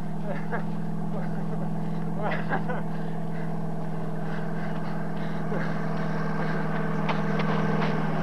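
Lorry engine running steadily and growing slightly louder as it approaches. A few short, sliding cries sound over it in the first few seconds.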